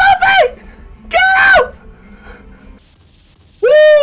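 Shouted battle cries from an anime fight scene's voice acting, three loud yells with the last one long and held near the end, over the episode's background music.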